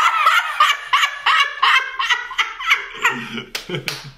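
A woman and a man laughing hard together in quick, pulsing bursts, the higher laugh first and a lower one joining about three seconds in, with a couple of sharp hand claps near the end.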